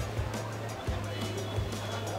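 Background music with a steady low bass note and a regular beat.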